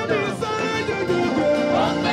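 Live gospel praise music: a band with drum kit, keyboard and electric guitar playing while voices sing over it.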